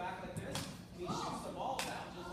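Speech and children's voices echoing in a large hall, with a sharp click near the end.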